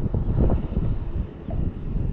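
Wind buffeting the microphone in uneven gusts, a loud low rumble that swells and drops.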